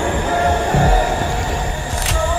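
Horror-trailer sound design: a loud, steady low rumble with thin sustained eerie tones held over it, and a brief low swell a little before the middle.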